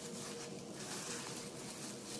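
Faint rubbing and rustling of plastic-gloved hands smoothing over a hardened plaster leg cast, in soft repeated strokes, over a thin steady hum.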